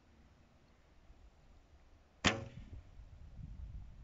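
A heavy-draw wooden bow shot once, about two seconds in: a single sharp release of the string with a short ringing decay.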